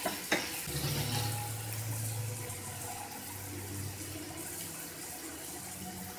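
Garlic-ginger paste frying in hot oil in a non-stick kadhai, a steady sizzle as the paste browns. A single sharp click about a third of a second in.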